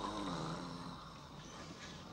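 A man snoring in his sleep, a low rasping snore in about the first second that fades away after it.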